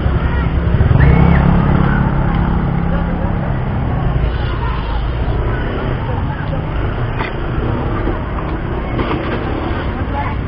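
Indistinct voices chattering over a loud low rumble, the rumble strongest in the first few seconds and then easing slightly.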